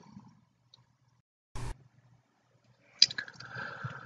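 Mostly quiet pause in a voice-over recording, broken by one short click about a second and a half in and a faint breathy noise in the last second.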